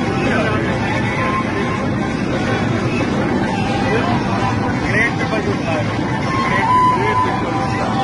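Steady drone of an airliner cabin in flight, with people's voices talking over it.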